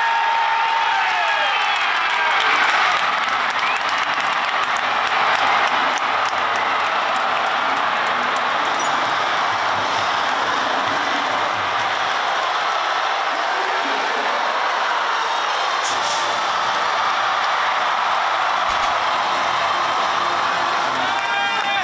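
Baseball stadium crowd cheering loudly and steadily for a home run, with players yelling in the dugout at the start.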